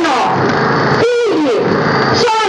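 Protest marchers shouting a chant: loud raised voices with drawn-out syllables, one held call falling in pitch about a second in.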